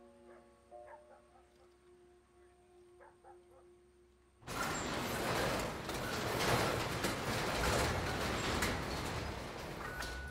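Soft music with held notes, then about halfway a sudden, loud, steady rattling rush: a large glass-panelled garage door being hauled open.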